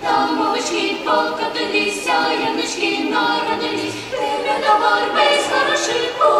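A small youth choir, mostly girls' voices, singing a cappella in several parts with no instruments.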